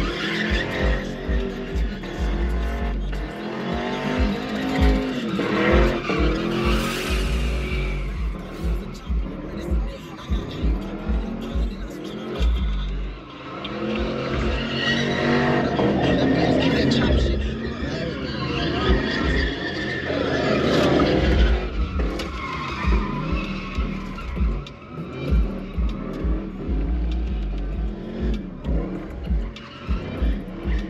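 Cars spinning donuts, engines revving up and down over and over and tires squealing, over a pulsing bass beat of music and crowd voices.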